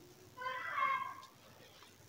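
A single short, high-pitched meow-like cry about half a second in, lasting under a second, faint beneath the level of the nearby speech.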